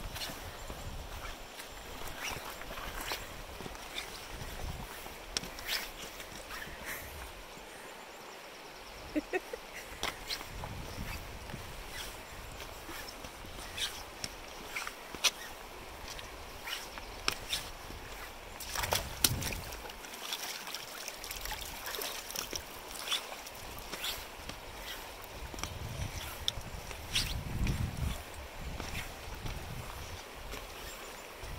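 Shallow river running over rocks, a steady rushing, with many short sharp clicks and knocks scattered through it and a couple of low rumbles about two-thirds of the way in and near the end.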